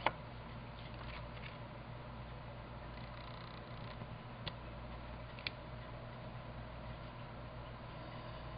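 Faint handling of paper cardstock as a patterned mat is laid on a card base and pressed flat: a sharp click at the very start, soft rustles about a second in, and two small ticks around the middle, over a steady low hum.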